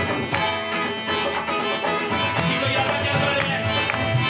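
Live qawwali-style devotional music: a harmonium holds steady notes under a strummed acoustic guitar, with an even percussion rhythm throughout and low drum beats coming in about halfway.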